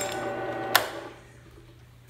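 Drill press spinning a VW main bearing against a flathead screwdriver cutting its thrust face: a steady whine of the cut. The whine stops with a sharp clack about three quarters of a second in, leaving only the drill press motor's faint low hum.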